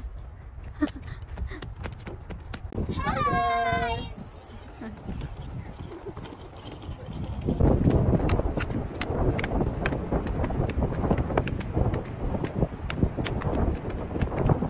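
Footsteps knocking on wooden boardwalk planks and wooden steps, an irregular run of hollow knocks. A high voice calls out once, drawn out, about three seconds in. From about halfway, wind buffets the microphone under the steps.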